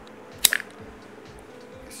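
Pruning shears snipping through a wooden stick: a single sharp crack about half a second in. Background music with a steady beat runs underneath.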